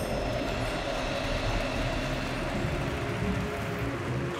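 Underwater ocean ambience: a steady, low wash of water noise, with the last notes of the music dying away in the first moment.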